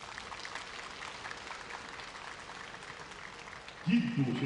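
Arena audience applauding, a dense patter of many hands clapping, with a voice coming in over it near the end.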